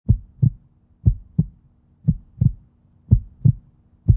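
Heartbeat sound effect: four double thumps, lub-dub, about one beat a second.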